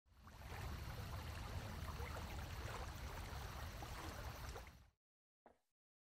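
A small river flowing over riffles, a steady rush of water that cuts off just before five seconds in.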